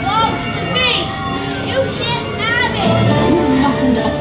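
Eerie soundtrack music with high children's voices over it, rising and falling in pitch, from a haunted-house pre-show recording.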